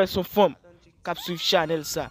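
A man's voice shouting short DJ hype calls, with a brief pause about halfway. A tone glides upward under the second call and then holds steady.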